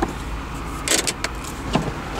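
Porsche 996 Carrera's 3.6-litre flat-six idling at a standstill, with a sharp click about a second in and a lighter knock near the end as the six-speed manual's gear lever and the console switches are worked.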